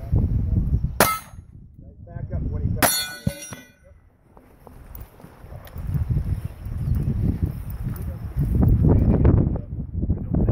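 Two sharp shots about two seconds apart from a Winchester 1897 pump shotgun firing at steel targets, each with a metallic clang, the second ringing on for most of a second. Then a low wind rumble on the microphone.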